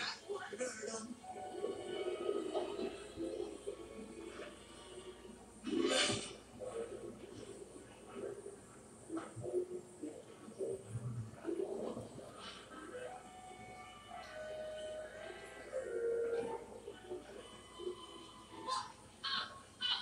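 Animated film soundtrack playing from a television: music with character voices and sound effects, and a sudden loud burst about six seconds in.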